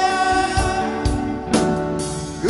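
Live band performance of a slow Korean pop-rock ballad: a male lead vocalist sings long held notes over acoustic guitar and band accompaniment.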